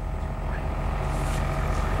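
Steady low mechanical rumble, like a running engine or generator, with no break or change.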